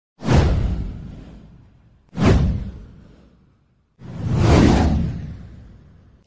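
Three whoosh sound effects for an animated title card, about two seconds apart. The first two hit suddenly and fade away over about a second and a half; the third swells up more gradually and fades out slowly.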